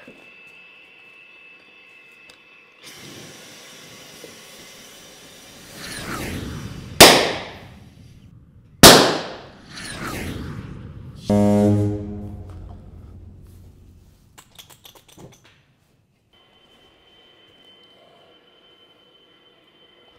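Two loud, sharp bangs about two seconds apart, each ringing off over about a second, over a faint steady hiss. A short buzzing tone and a few light clicks follow.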